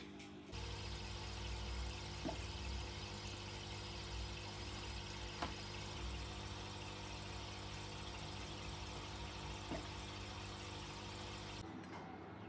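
Turtle-tank aquarium filter pump running: a steady hiss of pouring water over a low motor hum, starting about half a second in and stopping just before the end. Soft background music plays underneath.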